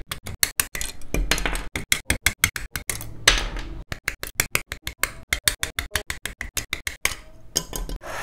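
Rapid plastic clicks and rattles of model-kit runners being handled, cut into a fast, even beat of about eight clicks a second. Short plastic rustles break in about a second in, just after three seconds and near the end.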